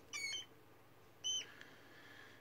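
Young pet rat, two months old, squeaking twice while held and handled: a short, wavering squeak near the start, then a louder, shorter squeak a little past a second in.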